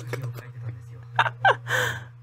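A woman laughing: two short voiced laughs a little over a second in, then a sharp breathy gasp near the end.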